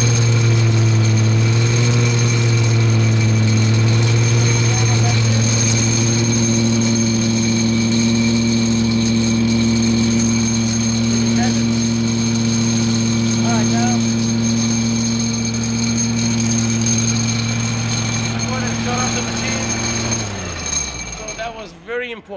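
Small gasoline engine of a carpet-cleaning machine running at a steady speed, then winding down in pitch and stopping about two seconds before the end.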